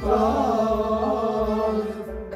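A man sings a Kashmiri Sufi kalam in a wavering, melismatic line over a sustained harmonium accompaniment.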